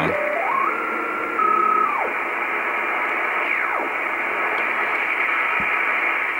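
Icom IC-R8500 communications receiver in upper sideband mode hissing with shortwave band noise as it is tuned across the top of the 12 m amateur band. A carrier's whistle steps up in pitch in the first two seconds, and another whistle glides down about three and a half seconds in.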